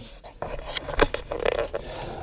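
Handling noise: a run of clicks and rustling scrapes as a handheld camera is moved and turned, with one sharp click about a second in.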